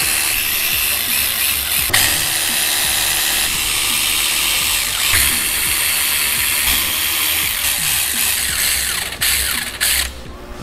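Cordless electric ratchet running continuously as it drives in the oil pump bolts on the front of a Subaru EJ253 engine block, with brief breaks about two and five seconds in, stopping near the end.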